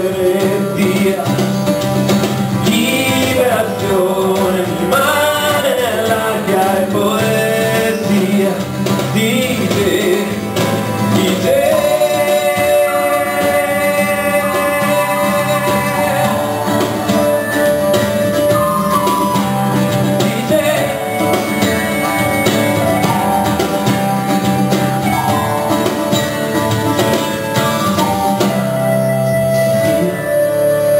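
A man singing a slow song live while strumming an acoustic guitar. The vocal line bends up and down through the first third, then settles into long held notes over the steady strumming.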